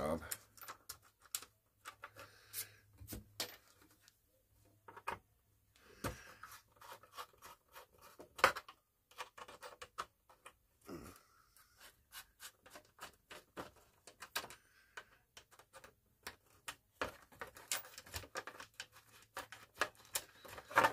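Irregular small clicks, taps and scrapes from working the handle screws out from inside an old radio cabinet, with one sharper knock about eight seconds in.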